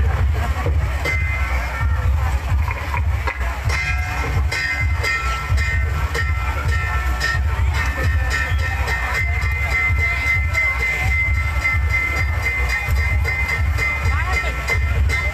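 Live Khmer bassac opera music with held, sustained melody notes over a constant heavy low rumble.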